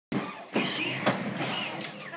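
Battery-powered ride-on toy car driving on concrete: its electric motor whining and its hard plastic wheels rumbling, with two sharp clicks.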